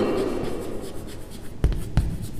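Chalk writing on a chalkboard: a soft, steady scratching, with two sharp taps of the chalk near the end.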